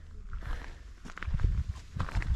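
Footsteps of a person walking on a paved trail, a series of soft thuds, over a steady low rumble.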